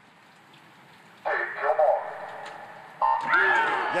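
A hushed pool hall, then the starter's call to the marks over the loudspeakers a little over a second in; near the end the electronic start beep sounds, followed at once by louder crowd noise as the race starts.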